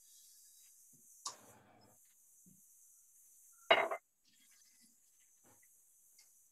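Near silence broken by two brief knocks of kitchenware being handled: a light one just over a second in and a louder, sharp clink near four seconds.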